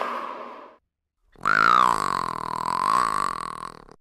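A cartoon character's voiced animal cry, lasting about two and a half seconds with a wavering pitch and starting just over a second in. Before it, the end of a noisy, unpitched sound fades out within the first second.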